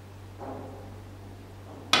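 Sharp click of a snooker shot near the end, the ball struck on the cloth, over a steady low hum.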